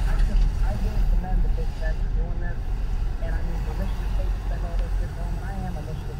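Road and engine rumble heard inside a moving car's cabin as it slows behind stopped traffic, easing off a little near the end. Faint radio talk runs over it.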